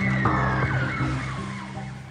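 A siren winding down, one tone falling steadily in pitch over about two seconds, with background music underneath.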